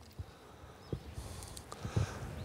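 Quiet outdoor background with a few faint, soft clicks and a light hiss in the second half.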